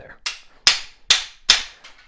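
Claw hammer striking a steel swaging tool driven into the end of soft annealed copper pipe, a quick run of four sharp blows, the swage nearly at full depth just before the tool bottoms out.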